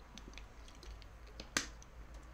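A person drinking water from a bottle: quiet swallowing and mouth sounds, then a single sharp click about one and a half seconds in.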